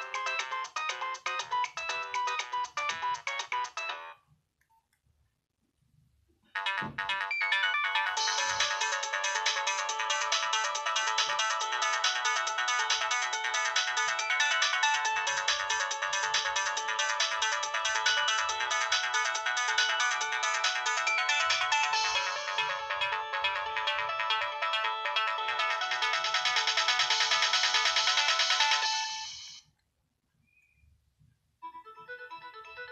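Polyphonic ringtones of a Nokia 6030 played through the phone's small loudspeaker as the tones are previewed in its ringtone list. One melody stops about four seconds in. After a short silence with a couple of faint thumps, a second, longer melody starts and plays until it cuts off near the end.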